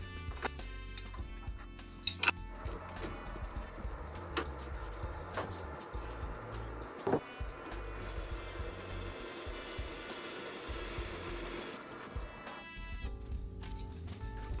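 Background music over the faint steady running of a benchtop mini milling machine cutting a hole in aluminum plate with an annular cutter. The machine noise sets in just after a sharp click about two seconds in and stops near the end, with a few lighter clicks along the way.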